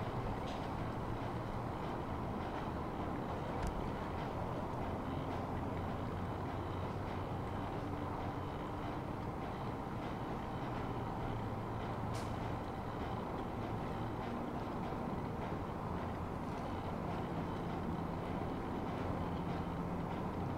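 Steady low rumble of distant vehicle traffic, with a few faint clicks.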